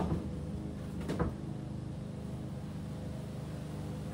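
Lawn mower engine running steadily in the background, with two knocks, one at the very start and another about a second in, as a large painted canvas is set in place.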